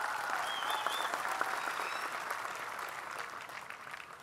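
Large crowd applauding, fading out gradually over the few seconds.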